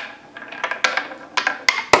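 A marble running down a handmade wooden zigzag marble run, knocking against the wooden ramps in a series of sharp clacks, the loudest near the end. It bounces because the routed groove is a little too narrow, by its maker's own account.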